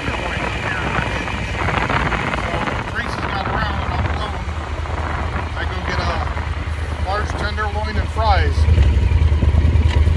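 Yamaha Super Tenere's parallel-twin engine running while the bike is ridden, with wind noise on the phone microphone behind the windshield. The engine gets louder near the end.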